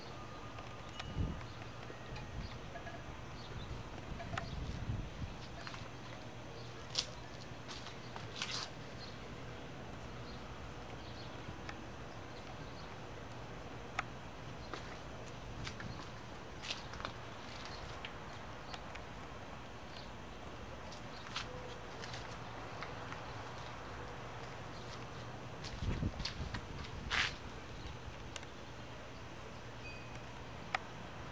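Quiet handling noise from a handheld camcorder carried around outdoors: a steady low hum with a few scattered sharp clicks and dull low thumps, the thumps coming about a second in, around four to five seconds in and again near the end.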